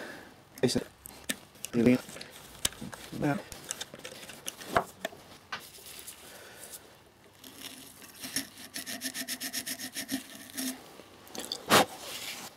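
A bolt being driven into a freshly tapped M5 thread in an acrylic (Perspex) sheet: scattered clicks and scrapes, then about three seconds of fast, even rasping with a low hum past the middle, and a sharp click near the end.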